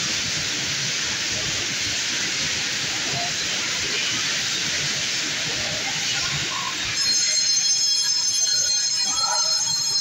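Bumper car ride running with a steady, even hiss. About seven seconds in, a louder high-pitched electric whine joins it.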